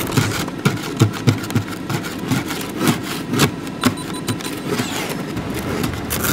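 Car engine idling, heard from inside the cabin, with irregular sharp ticks and knocks through it.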